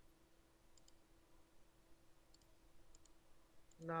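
A handful of faint computer mouse clicks, some in quick pairs, over near-silent room tone with a faint steady hum.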